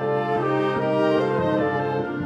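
Concert band music: the brass section holds sustained chords that shift to new notes a few times, with no percussion strikes.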